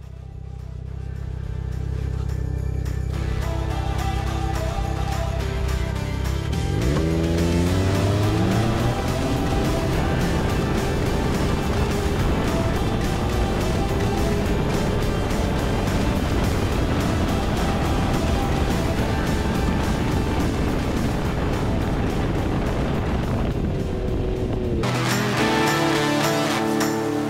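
Ski-Doo snowmobile engine under way on a trail. It revs up, rising in pitch about seven seconds in, then holds a steady high drone. Near the end it cuts off and gives way to music.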